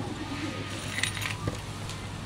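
A few light clinks and knocks of glass and plastic bottles and drinking glasses being handled and set down, over a steady low hum.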